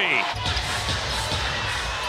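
Arena crowd noise, a steady hubbub with a low rumble, as fans react to a made three-pointer.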